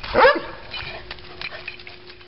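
A hunting dog lets out one short, loud bark a moment in, the excited bark of a dog digging after a chipmunk. Light scratching and clicking of paws in dirt and gravel follows.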